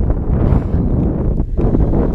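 Wind buffeting a GoPro's microphone: a loud, steady low rumble.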